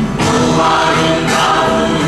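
Music: a choir singing a Christian worship song, with held notes over accompaniment.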